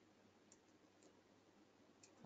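Near silence, with two faint computer keyboard key clicks, about half a second and a second in, as text is typed.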